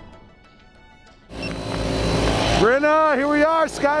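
A theme-music jingle fades out. About a second in, a loud, even outdoor rush of noise cuts in, the kind of wind and rumble a handheld camera microphone picks up outdoors, and a man's voice starts talking over it.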